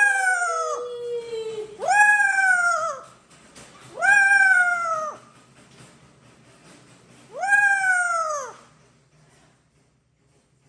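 Amazon parrot giving four drawn-out calls, each about a second long, rising then falling in pitch, with pauses of one to two seconds between them.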